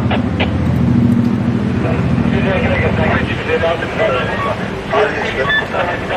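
A large vehicle's engine running close by in street traffic, a low steady drone that fades away after about three seconds, with men's voices talking over it.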